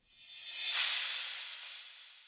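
Closing sound effect: a hissing whoosh that swells for under a second, then fades away over about two seconds.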